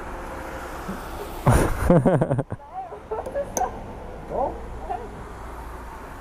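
Indistinct voices in short snatches, loudest for about a second starting one and a half seconds in, over a steady low rumble.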